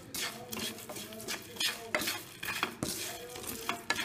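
Whole spices being stirred in a metal frying pan as they fry: a steady run of irregular scrapes and rattles of seeds and utensil against the pan.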